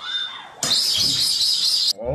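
A short sound with a rising and falling pitch, then a loud, shrill, hissy whistle with a wavering tone. The whistle starts suddenly a little after half a second in and cuts off abruptly near the end.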